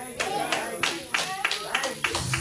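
A congregation clapping in uneven handclaps, with voices calling out beneath.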